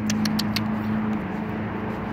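A steady low mechanical hum, with a few light clicks in the first half second.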